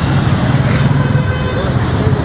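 Steady low rumble of outdoor ambient noise, with faint, indistinct voices in the background.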